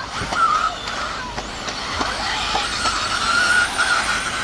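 Electric 1/10-scale 4WD RC buggies, with 13.5-turn brushless motors, running on the track: a high, wavering motor and gear whine over a steady hiss, with a couple of sharp knocks.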